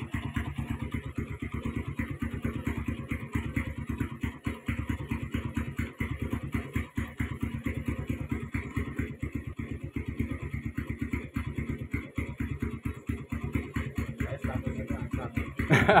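Honda single-cylinder four-stroke motorcycle engine on a stock Mega Pro carburettor, idling steadily with an even, rapid exhaust beat.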